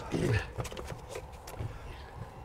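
A man's short grunt, falling in pitch, as he climbs into a golf cart, followed by faint clicks and rustling from the movement.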